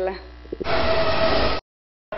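A burst of rushing noise with a faint steady tone, starting abruptly about two-thirds of a second in and lasting about a second, then cut off sharply into dead silence, as at a video edit.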